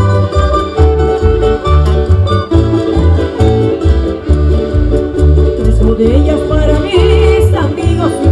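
Canarian parranda folk band playing a dance tune: strummed guitars and other plucked strings with accordion and conga drums over a steady low beat.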